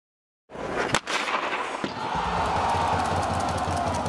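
Cinematic logo-intro sound effects: starting about half a second in, a burst of swooshing noise with a sharp impact about a second in and a second, lighter hit just before two seconds, then a steady low pulsing rumble under a tone that slowly falls in pitch.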